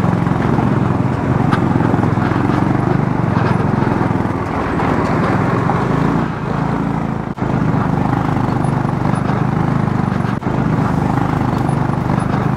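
Motorcycle engine running steadily while riding over a gravel road, with tyre and wind noise, broken twice by brief dips.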